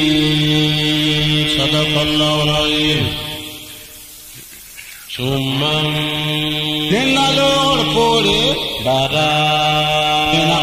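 A man's voice chanting Quran recitation in long held notes with melodic turns. It breaks off for about a second and a half near the middle, then resumes.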